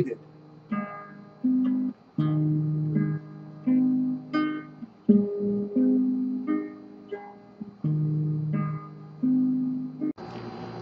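Nylon-string classical guitar played fingerstyle in a slow study: single plucked notes over bass notes, a new note about every two-thirds of a second, each left to ring.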